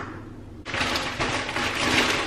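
Plastic packaging crinkling and rustling as it is handled, a dense crackle of many small clicks that starts under a second in, after a single short click.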